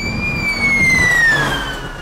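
Emergency motorcycle siren sounding one long wail, its pitch rising slightly and then falling steadily as it fades away, with a low rumble beneath.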